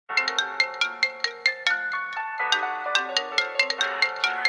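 A phone ringtone: a quick melody of short chiming notes, about five a second, repeating its phrase.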